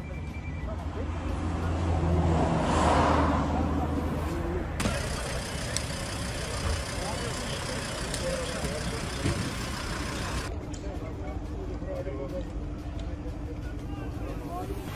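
A road vehicle drives past close by, its noise swelling and fading about three seconds in, over the outdoor hubbub of people talking.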